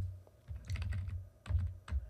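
Computer keyboard keystrokes: a quick cluster of key presses about half a second in, then two single presses near the end, each a sharp click with a dull thump.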